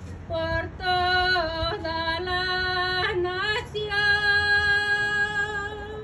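A woman's voice singing a slow devotional song, moving through a few sustained notes and ending on one long held note about four seconds in.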